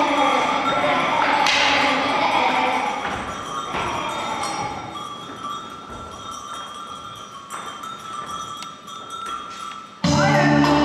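Indistinct children's voices and movement on a wooden floor, with a few thumps; loud for the first few seconds, then dying down.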